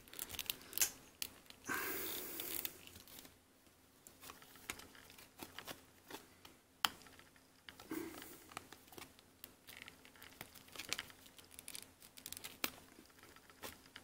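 Handling noise of a plastic action figure: scattered small clicks and scrapes as its translucent plastic wings are worked out of and pushed into the pegholes in its back and flexed on their joints, with a longer rubbing scrape about two seconds in.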